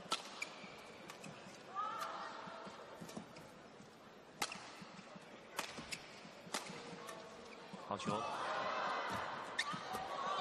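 A badminton rally: rackets striking the shuttlecock in a string of sharp hits, roughly one a second. A commentator's voice comes in near the end.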